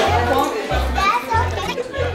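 Music with a heavy bass line in short, pulsing notes, mixed with the chatter of adults and children.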